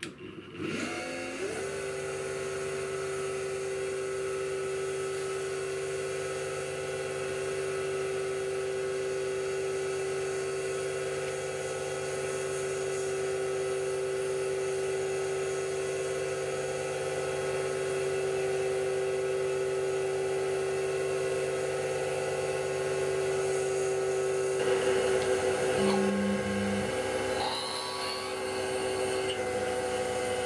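Grizzly G8689Z CNC mini mill spindle motor spinning up about a second in, then running at a steady high whine. Near the end the sound changes, and a short lower hum comes in twice.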